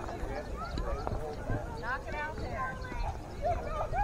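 Indistinct voices of players and spectators chattering and calling out at a baseball field, no clear words.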